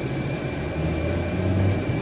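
Vehicle interior noise while driving: a steady low engine hum that swells a little in the second half, over the hiss of tyres on a wet road.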